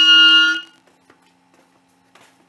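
Clarinet holding one loud, steady note that stops abruptly about half a second in.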